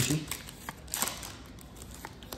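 Yu-Gi-Oh trading cards sliding and flicking against each other as they are leafed through by hand: soft scattered clicks with a brief rustle about a second in.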